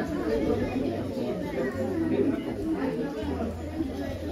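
Indistinct chatter of a crowd, many people talking at once with no single voice standing out.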